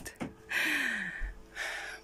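A woman's breathy sigh with a falling pitch, then a shorter breath just before the end, with a small click just before the sigh.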